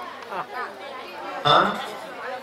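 Speech only: quieter voices in the first second, then a man saying "hã" into a microphone about one and a half seconds in.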